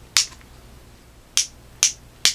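Plastic tilt hinge of a BlackFire BBM6414 headlamp clicking through its detents as the lamp housing is angled: three sharp clicks, one just after the start and two close together near the end.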